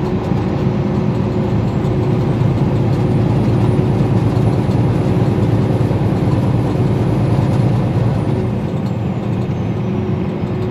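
Steady engine and road noise heard inside the cab of a high-riding vehicle travelling at highway speed, with a low, constant hum that swells a little in the middle and eases toward the end.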